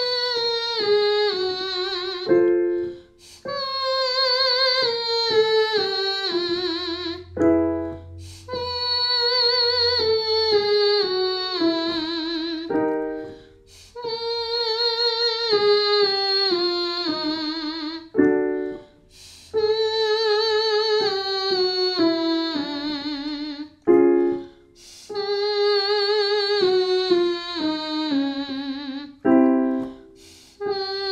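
A woman singing a 'moito' vocal warm-up exercise with piano: six sung phrases, each a stepwise descending scale held with vibrato, each one set up by a short piano chord and starting a little lower than the one before.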